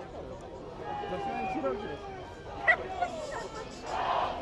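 Indistinct voices of people in the stands, with a sharp, short sound about two and a half seconds in that is the loudest thing here, and a smaller one just after.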